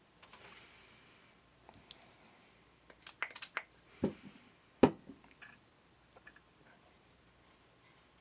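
Light handling noises while cleaning inside an opened VCR: a faint soft rubbing at the start, then a cluster of small clicks and taps, the sharpest a single knock a little before five seconds in.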